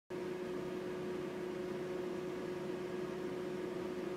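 Steady room tone: an even hiss with a constant faint hum tone underneath, unchanging throughout.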